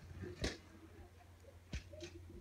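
Quiet outdoor background with two short soft knocks about a second apart, from a rubber playground ball being thrown and striking in a game.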